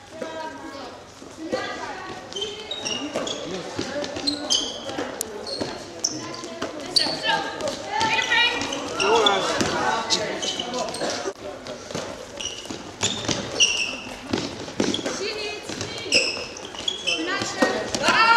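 Indoor court sounds of a korfball game in an echoing sports hall: players' shoes squeaking and thudding on the floor, the ball being passed and caught, and players' shouted calls.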